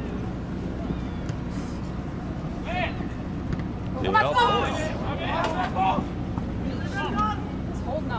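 Players and spectators shouting across the field during soccer play: a call about three seconds in, a cluster of shouts around the middle, another near the end. A steady low rumble runs underneath.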